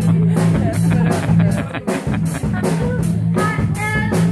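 Live band playing: a girl sings into a microphone over electric guitar and bass notes, with a drum kit keeping a steady beat.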